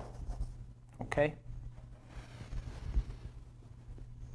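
Chalk scratching on a blackboard in a few short strokes as a word is written, with a brief voice sound about a second in, over a steady low hum.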